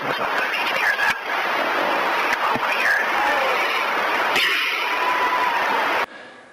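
Loud, dense soundtrack under the opening titles: a wash of noise with short voice-like cries gliding up and down and a sharp bang about a second in. It cuts off suddenly at the end.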